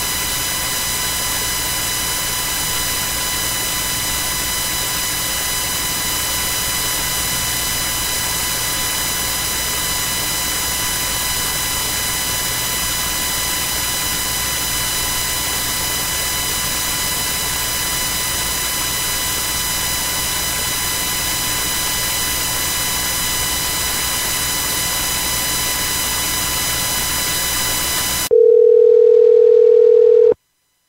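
Steady hiss and buzz of an open telephone conference-call line, with many faint steady tones in it. About two seconds before the end the noise drops out for a single steady beep, the conference-call system's tone ahead of its automated join announcement.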